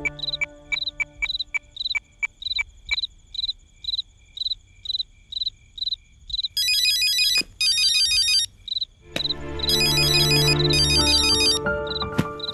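Mobile phone ringtone ringing in two bursts of about two seconds each, from just past the middle, over crickets chirping steadily about four times a second. Background music fades early on and comes back under the second ring.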